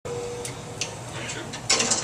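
Scattered small clicks and knocks from a band handling its instruments and gear between songs, with a faint steady tone at the start and a louder brief rustle near the end.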